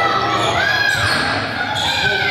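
Game sound of indoor basketball: a ball bouncing on the gym floor, sneakers squeaking on the hardwood in a few short rising-and-falling squeals, and players' voices, all echoing in a large gym.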